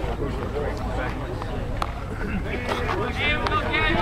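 Indistinct chatter and calls from players and spectators around a baseball field, with no clear words, getting louder near the end.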